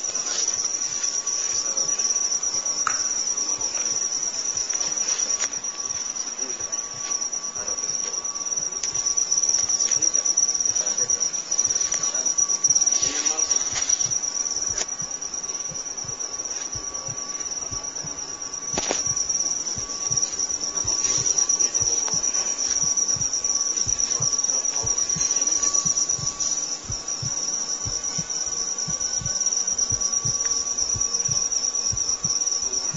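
Insects singing a continuous, steady high-pitched trill, with a sharp click about two-thirds of the way in.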